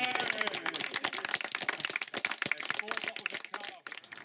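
A small group of people clapping, with a few voices mixed in; the clapping stops just before the end.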